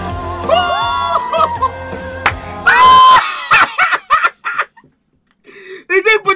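Live pop song with a female singer over a band with bass, her voice climbing to a loud held high note, the loudest moment, about halfway through. The music then stops abruptly and a man laughs in short bursts before a brief silence.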